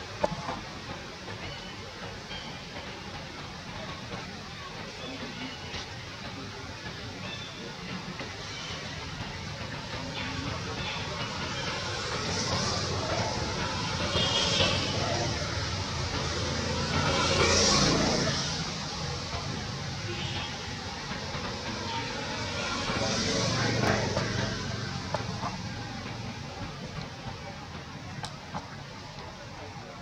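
Outdoor background noise with distant vehicles passing, swelling and fading three times, with faint voices in the background.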